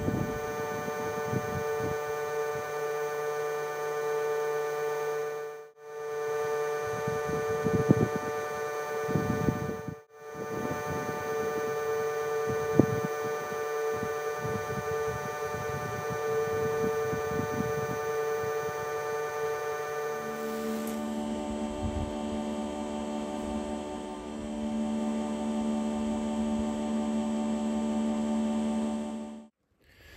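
Leaf blower running steadily on low, a hum with a whine above it, pushing air through a solar air heater panel for a temperature test. The sound cuts out briefly twice, and its pitch drops about two-thirds of the way through.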